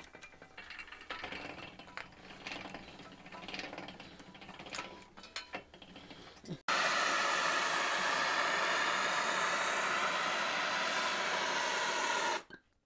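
Jeweller's rolling mill working a strip of pure gold between its steel rollers, its gears clicking and rattling irregularly. About two-thirds of the way in this gives way abruptly to a gas torch flame hissing loudly and steadily as it heats the rolled gold strip.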